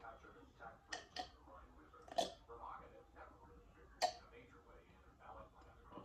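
A boy gulping a drink from a glass, with four sharp swallows: two close together about a second in, one around two seconds and one around four seconds. Faint talking runs underneath.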